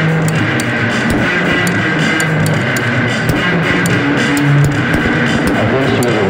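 Experimental psych rock, instrumental: guitars and bass guitar playing over a steady beat, with high ticks about three times a second.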